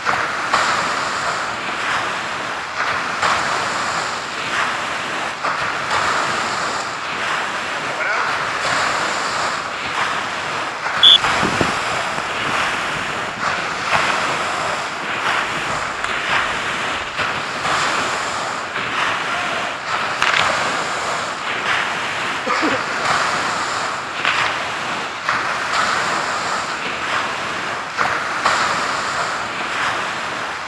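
Continuous wash of surf and water splashing as swimmers wade and swim through the waves. A short high-pitched tone sounds once, about eleven seconds in, louder than the rest.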